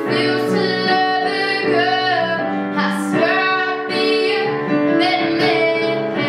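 A teenage girl singing a pop ballad solo, holding and gliding between notes, over piano backing.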